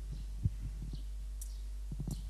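A thurible being swung, with a sharp metallic clink of its chain about two-thirds of the way in, over a steady electrical hum and a few soft low thumps, the loudest just before halfway.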